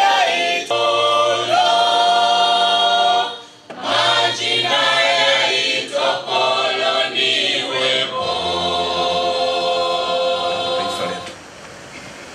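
A choir singing unaccompanied, in slow, long-held notes. The singing dips briefly about three and a half seconds in and breaks off near the end.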